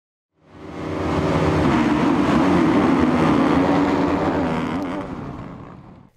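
An engine sound fades in about half a second in, runs steadily, then fades away over the last two seconds.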